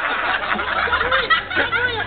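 A person laughing in short snickers and chuckles, with other voices around.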